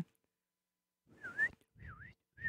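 A person whistling short two-part notes that dip and then rise in pitch, twice in the second half.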